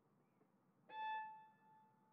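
A single high violin note sounds about a second in, starting sharply and ringing away over most of a second, with near silence around it.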